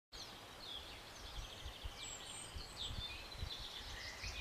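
Small birds chirping, a scatter of short high calls and quick slides, over a steady low outdoor rumble.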